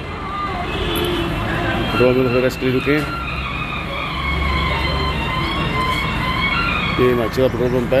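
Fuel-station forecourt sound: voices of people nearby over the steady low hum of idling vehicle engines, with a deeper engine rumble swelling for about a second midway.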